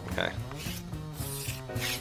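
Chalk scratching on a small slate chalkboard as someone draws, in a few short rasping strokes.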